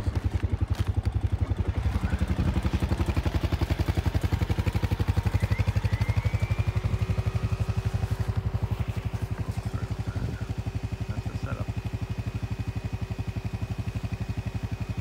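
Honda Rubicon ATV's single-cylinder engine idling with a steady, rapid, even putter.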